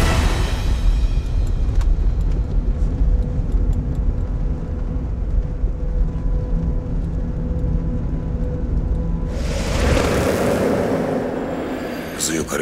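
Steady low rumble of road noise inside a moving car's cabin, with a held tone from the music score above it. A swelling whoosh rises about three-quarters of the way through and fades near the end.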